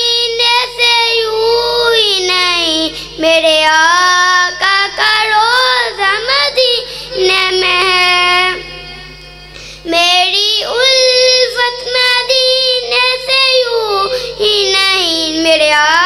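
A boy singing an Urdu naat as a solo voice, in long held notes that slide up and down in pitch. The singing breaks off for about a second near the middle, then resumes.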